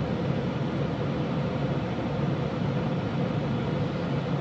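Steady rush of a car's air conditioning blowing inside the cabin, with a low, even hum under it.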